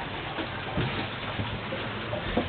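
Steady rushing noise of wind and water aboard a sailing catamaran under way.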